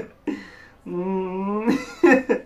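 A voice gives a short sound, then holds one steady, whining note for almost a second, like a nervous whimper.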